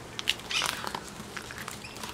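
Page of a ring binder with plastic sheet protectors being turned: a crinkling rustle of plastic with a few light clicks.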